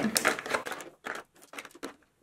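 Makeup powder compacts and jars being packed into a tray by hand, clicking and knocking against each other and the tray: a cluster of handling noise, then a few separate light taps.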